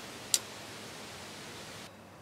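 A single sharp click from a bow's mechanical release aid, over a steady hiss. It is the stray click that alerted a deer and sent it running.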